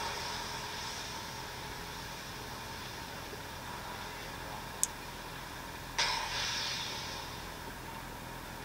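Steady faint hiss with a low hum, as of an open audio feed. There is a single sharp tick a little before five seconds in, and a sudden rush of hiss about six seconds in that fades over a second or so.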